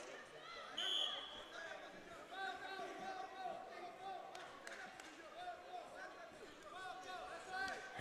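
Faint arena ambience of spectators' and coaches' voices. A short, high referee's whistle sounds about a second in to restart the wrestlers, and a couple of sharp slaps come near the middle as they tie up.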